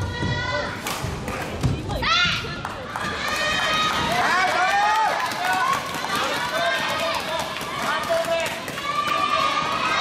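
Overlapping shouts and calls from many voices across a badminton hall full of courts in play, with a few sharp knocks and thuds in the first two seconds.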